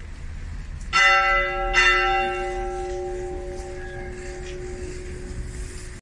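A church bell struck twice, a little under a second apart, each stroke ringing on and slowly dying away: a funeral toll as the coffin is carried into the church.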